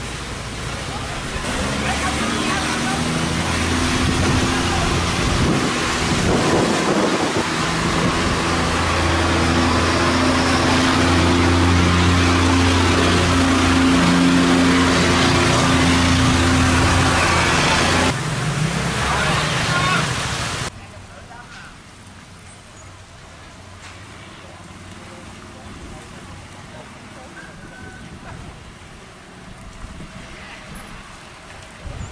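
Fast water rushing through a canal sluice gate, loud and churning, with a boat engine's steady hum running under it for most of the time. About two-thirds of the way through, the sound drops abruptly to a much quieter background.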